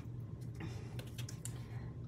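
Faint, irregular light clicks and taps from hands handling small paper pieces and a glue bottle on a craft mat, over a low steady hum.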